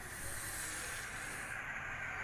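A steady hiss of noise that starts abruptly and holds even, with no clicks or tones in it.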